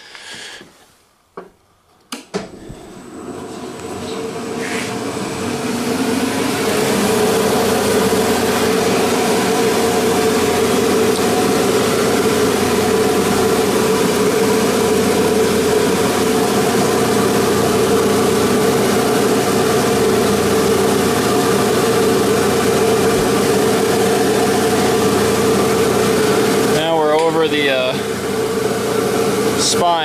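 Abrasive Machine Tool Co. Model 3B surface grinder's 3-horsepower spindle motor and 12-inch grinding wheel starting up. The hum rises over a few seconds to a steady run at speed, after a couple of short clicks.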